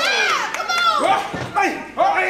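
A few spectators calling out and shouting at the wrestlers in short, overlapping, high-pitched yells. Some of the voices sound like children's.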